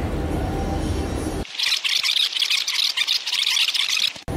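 Background music, which cuts off suddenly about a second and a half in and gives way to a loud, dense crackling sizzle of meat frying on a mookata grill pan.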